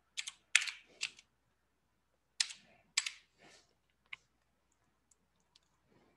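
Keys struck on a computer keyboard: three quick keystrokes in the first second, three more a couple of seconds in, and a single key a second after that.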